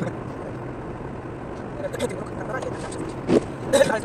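Steady road and tyre noise inside a car's cabin at expressway speed of about 88 km/h, with short bursts of voices, loudest near the end.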